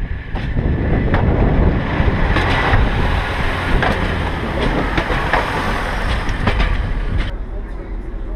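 Class 141 Pacer railbus passing close by: the low rumble of its engine and the clatter of its four-wheeled underframe, with irregular sharp knocks from the wheels over the rail joints. The sound drops suddenly near the end to the quieter noise inside the railbus.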